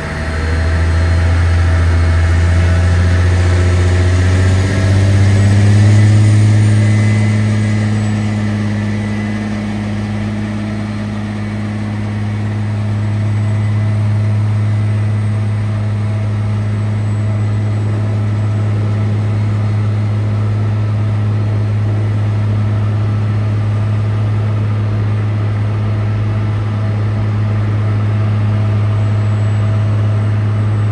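Diesel engine of a towbarless aircraft pushback tug revving up over the first few seconds, then running steadily under load as it pushes back a Boeing 777.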